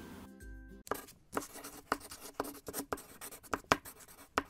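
Chalk scratching on a chalkboard in a quick series of short strokes, like handwriting, over faint background music.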